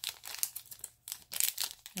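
Small plastic bag crinkling in the hands as it is handled and shaken to tip out tiny tassels, in irregular crackles with a short lull about halfway.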